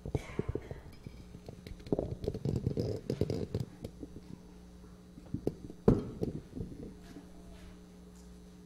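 Microphone handling noise: knocks, bumps and rubbing as a microphone is adjusted on its stand, with a cluster of thuds around two to three and a half seconds in and one sharp knock about six seconds in.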